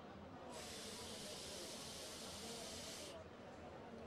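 A box mod firing a freshly dripped rebuildable atomizer during a long draw: a steady hiss of the coil vaporising the e-liquid and air being pulled through it, starting about half a second in and cutting off sharply after about two and a half seconds.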